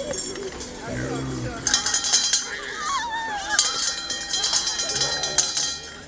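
Small metal hand bells shaken rapidly, jangling in two spells: about two seconds in and again from about three and a half seconds until near the end. A brief wavering high-pitched tone sounds between them, with voices around.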